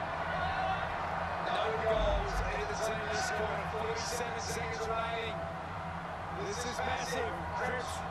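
Australian rules football TV broadcast audio: commentators talking at a lower level than a close voice would be, over a steady low electrical hum.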